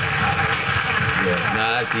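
Studio audience applause mixed with voices, heard through a television's speaker; a man starts speaking near the end.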